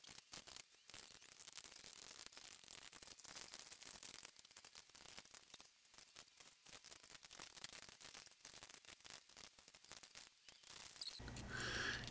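Near silence: faint hiss with a few scattered faint ticks.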